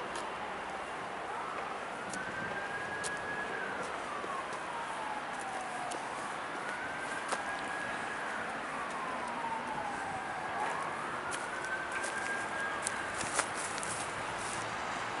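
An emergency vehicle siren in wail mode: one tone that slowly rises, holds and falls, about three times over, over a steady hiss of city noise. A few small clicks sound near the end.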